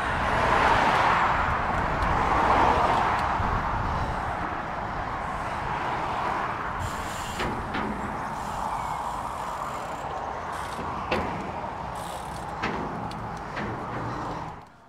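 Steady rushing wind and tyre noise from a gravel bike being ridden, heard on a handlebar-mounted camera's microphone, loudest in the first few seconds. A few light clicks and knocks from the bike come through in the second half.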